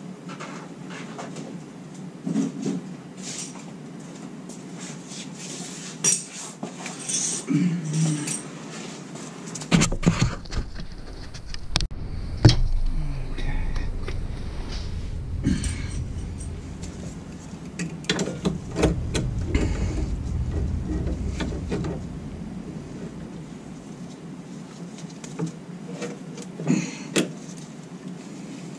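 Wrench and metal hardware clicking and clinking on the transfer case shifter linkage and bracket as it is fastened by hand. A low rumble joins in about a third of the way in and fades out a few seconds before the end.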